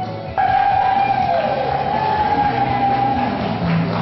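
Live band music that jumps suddenly louder about a third of a second in, as a long held high note comes in and carries on over the accompaniment.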